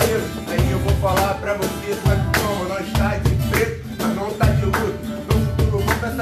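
Live acoustic music: a cajón keeping a steady beat with deep bass strokes about once a second, under a strummed acoustic guitar.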